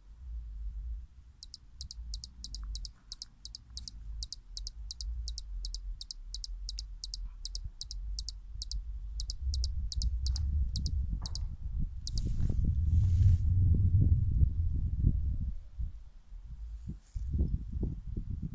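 Hummingbird giving a long, even series of high, sharp chip notes, about three a second, which stop a little past halfway. Underneath runs a low rumbling noise that is loudest in the second half.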